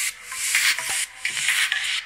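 Music played through a Vibe CVEN 63C V4 car-audio component speaker set, made up of short hissy bursts that are mostly treble with little bass.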